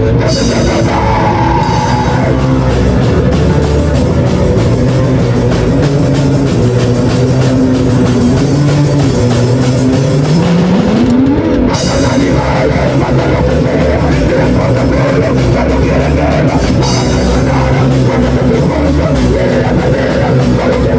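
Punk hardcore band playing live: electric guitar, bass and drum kit playing loud and steady, with one note sliding upward about ten seconds in.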